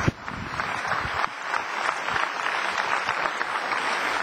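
An audience applauding, with steady clapping throughout.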